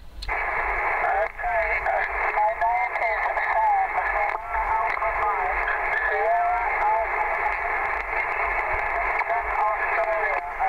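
A distant station's voice received over the radio on the 11-metre band and heard through the transceiver's speaker: thin, narrow-band speech half buried in steady static hiss. It is the reply to the request for operator name and location.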